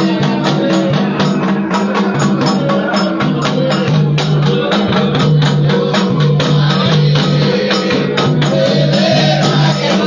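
Candomblé ceremonial music: drums beating a fast, steady rhythm under held group singing.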